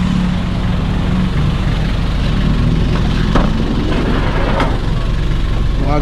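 Nissan Urvan van's engine idling, a steady low hum, with two brief knocks past the middle.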